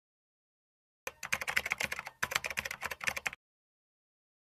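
Rapid computer-keyboard typing clicks, a typing sound effect, starting about a second in and stopping a little after three seconds, with a brief pause halfway through.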